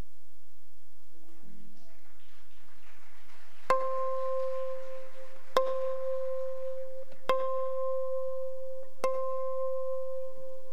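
A plucked string instrument sounds the same single high note four times, about one and three-quarter seconds apart, each note ringing on until the next. The first note comes about a third of the way in.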